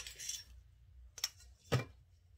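A long metal ruler and a marker pen handled and set down on pattern paper over a table: a sharp click at the start, then two more knocks, one just past a second and a heavier one near the end, with light paper rustle after the first.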